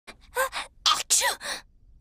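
A cartoon girl's voice gasping through a few short, breathy intakes that build into a sneeze.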